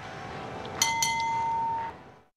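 A bright bell-like chime, the advertiser's sonic logo, struck twice in quick succession near the middle and ringing on with a steady tone before fading away.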